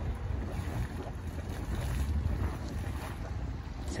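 Small mud vent spurting and splashing thick grey mud from its cone, heard under steady wind rumble on the microphone.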